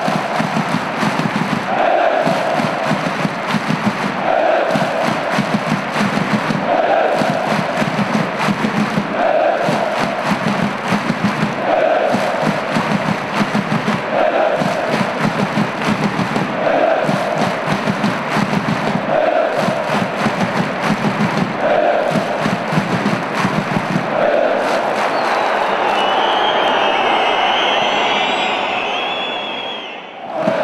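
Thousands of football supporters chanting in unison in a stadium stand, a short phrase repeated about every two and a half seconds. Towards the end the repeated chant gives way to a longer held phrase with a high wavering sound above it.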